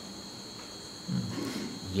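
Crickets chirping steadily in the background, a continuous high trill, heard in a pause between sentences of a man's lecture.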